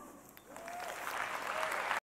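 Audience applauding at the close of a talk, starting about half a second in and growing steadily louder.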